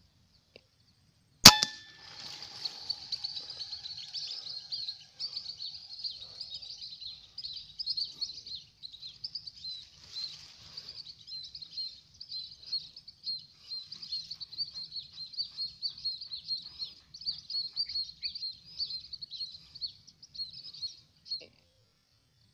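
A single sharp rifle shot about a second and a half in, with a brief ring after it. It is followed by a continuous, high-pitched, rapidly pulsing chirping chorus that carries on until just before the end.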